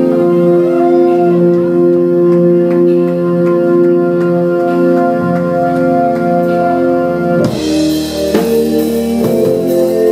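Live band music: sustained electric organ chords held on their own, then about seven and a half seconds in the drum kit comes in with a cymbal crash and drum hits under the organ.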